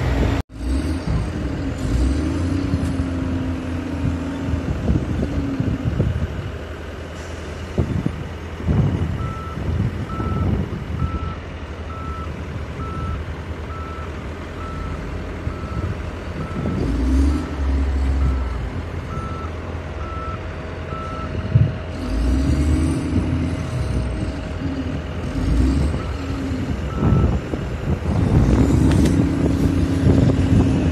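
Diesel engine and hydraulics of an excavator-based hirail coal leveler running steadily, with its load swelling now and then as the comb rakes coal in the wagons. Through the middle a reversing alarm beeps at about one beep a second, and twice more near the end.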